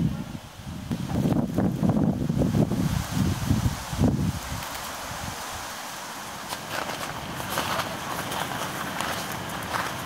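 Footsteps on wooden boardwalk steps, uneven thuds for about the first four seconds, then a steady rush of flowing river water.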